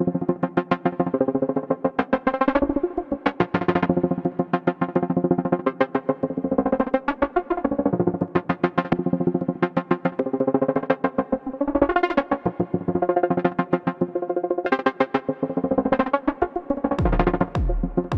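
Eurorack modular synthesizer playing a fast sequenced FM melody of short plucked notes, the tone swelling brighter and fading back every few seconds as LFOs modulate the FM depth through VCAs. A kick drum comes in near the end, thudding about twice a second.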